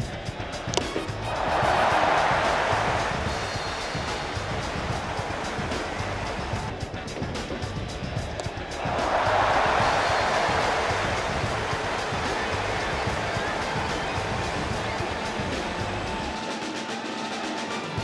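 Ballpark crowd with music from the stands, cheering up in two loud swells, about a second in and again about nine seconds in, as outs are recorded. A short sharp knock comes just before the first swell.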